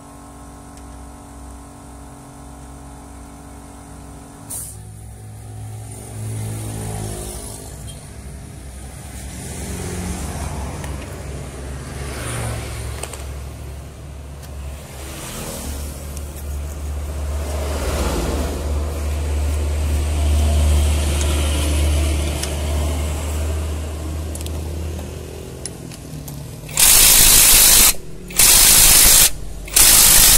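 Mechanical working noise around a truck's chassis linkage, with a steady low hum through the middle. Near the end come two loud bursts of compressed-air hiss, the first about two seconds long and the second brief.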